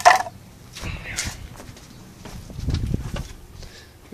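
Handling noise from a smartphone camera being moved and adjusted: rustles and knocks on the microphone, loudest in a sharp burst at the very start, with a low rumble near the three-second mark.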